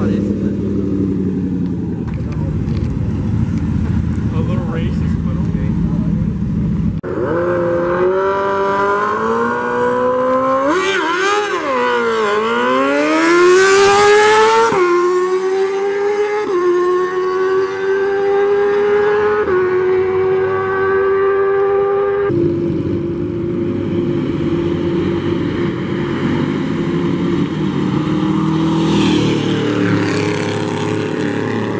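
Car engine rumbling at low revs, then a car accelerating hard: the revs climb, dip, and climb again to the loudest point about halfway through, followed by a few upshifts, each a small drop in pitch and a slow climb, before it settles back to a low rumble.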